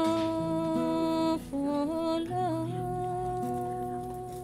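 A woman humming wordlessly: a long held note, then a short ornamented turn of sliding pitches about a second and a half in, settling on a new held note, over soft plucked kora notes.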